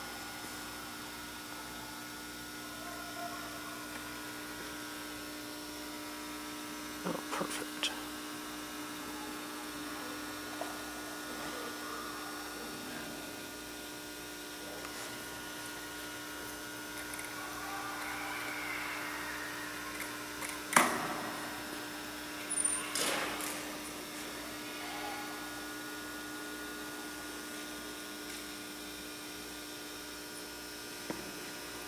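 Steady electrical hum in a large gymnasium hall, with faint voices in the background and a few sharp knocks, the loudest about 21 seconds in.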